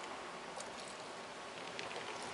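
Faint sips and swallows from a plastic sports water bottle, a few small clicks over a steady outdoor background hiss.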